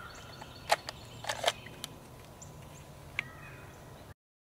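A pistol drawn left-handed from a Safariland level three retention duty holster: several short sharp clicks and knocks of the holster's hood and locking mechanism releasing and the gun coming free. The loudest click comes about three-quarters of a second in, with a pair about half a second later and a last click near the three-second mark.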